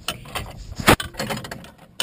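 Handling noise around the cast metal wigwag housing: faint rustling with one sharp click just under a second in.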